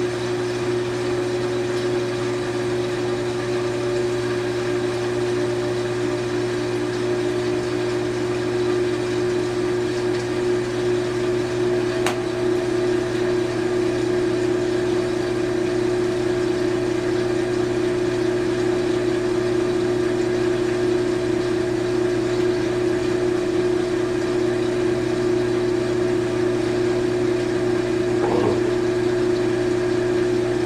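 Front-loading washing machine on its final spin, the motor and drum whirring steadily. A higher whine rises slowly in pitch over the first dozen seconds and then holds, and there is a single click about twelve seconds in.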